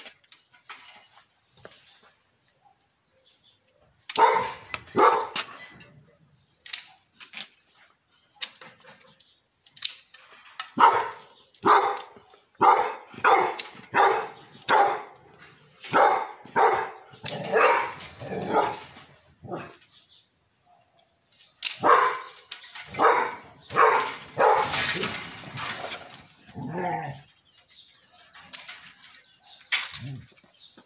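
A dog barking in three bouts, the longest a run of about two barks a second lasting some nine seconds, with a few sharp snips of pruning shears between the bouts.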